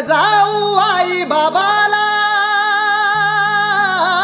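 Opening of a Marathi devotional song (Sai bhajan): a wordless sung melody with quick ornamented bends, settling into a long held note about two seconds in, over a steady low drone.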